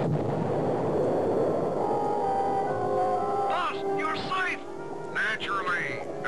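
Cartoon explosion sound effect from a detonated microcharge: a noisy rumble that fades out over about two seconds. Music follows, with high warbling chirps near the end.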